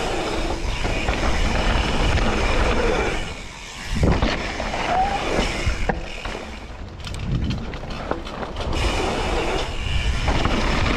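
Propain Tyee mountain bike riding fast over a dirt jump trail: tyres rumbling on the dirt and the bike rattling. It eases briefly twice, and a heavy thud about four seconds in sounds like a landing.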